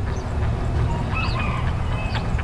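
Steady low outdoor background rumble, with a brief faint high call about halfway through.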